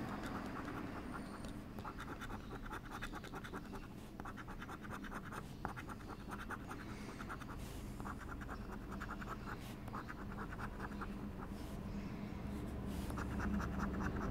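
A euro coin scraping the coating off a paper lottery scratch card in quick back-and-forth strokes, coming in several short runs with brief pauses between them.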